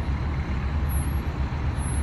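Steady low rumble of street traffic, a heavy vehicle's engine running.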